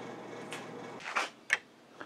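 Faint room tone, then a short scrape and a single sharp click about a second and a half in, as a round metal tin of pins is handled on the table.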